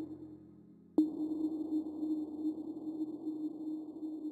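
Electronic outro sound effect: a sharp hit about a second in, followed by a steady low drone with a thin high ringing tone above it.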